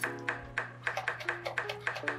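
Chef's knife chopping red serrano chiles on a wooden cutting board: a quick run of sharp taps, about six a second, over background music.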